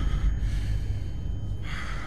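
A low, steady rumbling drone with a faint high tone above it. Near the end comes a short, sharp intake of breath from a man.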